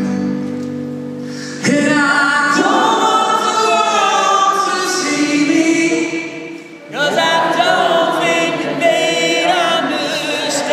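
An acoustic guitar chord rings on its own. Then, from about two seconds in, a live sing-along starts: the singer and the audience sing together over the strummed guitar, with a brief drop just before seven seconds.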